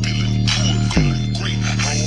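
A bass-heavy pop song played loud through a small bare 3-inch Logitech woofer driver, its cone working hard on a deep bass line with a beat.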